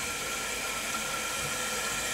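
Toilet tank refilling: a steady hiss of water running in through the fill valve.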